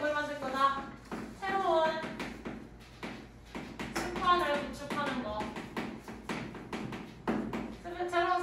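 Chalk writing on a chalkboard, a run of quick taps and clicks as the strokes go on, between stretches of a woman's speech.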